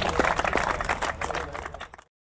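A small crowd applauding, many quick hand claps that fade away over the last second.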